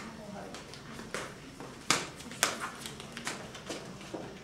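Indistinct voices talking, with several sharp clicks through it; the loudest click comes about two seconds in and another about half a second later.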